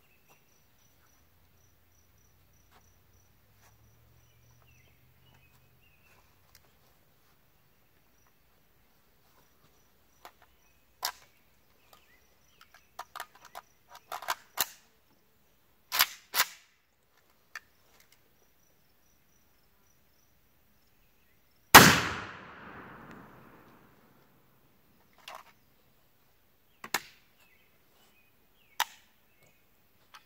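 A single rifle shot from an AK-pattern rifle firing 55-grain 5.56 FMJ, very loud with an echo that dies away over about two seconds, about three quarters of the way through. Before and after it come scattered sharp metallic clicks and clacks of the rifle being handled.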